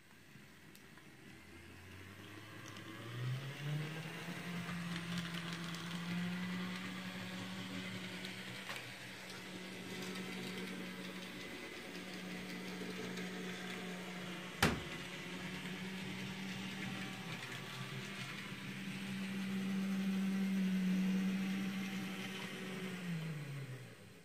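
Dapol N gauge Class 56 model locomotive running under DCC control: its motor whine rises in pitch as it speeds up over the first few seconds, holds steady, then falls as it slows near the end. One sharp click comes about halfway through.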